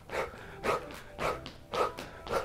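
A woman's sharp, breathy exhales, about two a second, one with each shadowboxing punch.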